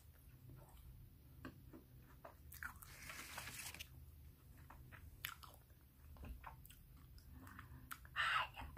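Close-miked mouth sounds of biting and chewing a hard frozen red bean and taro ice cream bar: faint crunches and wet clicks, with a longer crunchy stretch about three seconds in.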